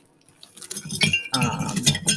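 A small rusty bell on a decorative pine sprig jingling and clinking as the sprig is handled, with rustling; it starts about half a second in, with a short ring about a second in.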